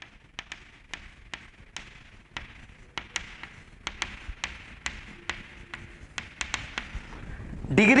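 Chalk tapping on a chalkboard as figures are written: a string of sharp, irregular taps, several each second.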